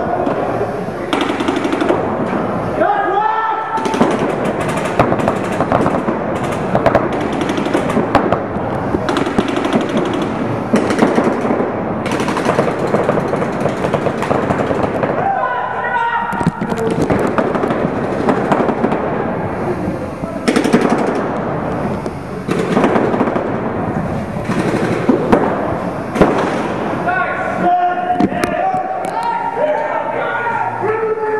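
Paintball markers firing in rapid strings of shots, many guns at once, with loud shouting voices breaking in now and then.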